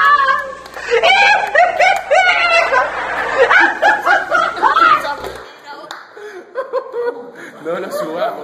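A group of people bursting into loud laughter and excited shrieks, which die down about five seconds in.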